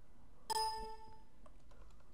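A single short electronic chime, a computer notification or system sound, about half a second in and fading within about a second. Faint keyboard clicks sound around it.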